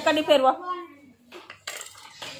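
Homemade CD spinning top with a bottle-cap hub spinning on a concrete floor, its disc clattering against the ground, with a few sharp clicks about one and a half seconds in. A child's voice is heard at the start.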